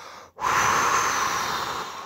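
One long, drawn-out human breath, starting about half a second in and fading away near the end, set where the narration speaks of God breathing the breath of life into man.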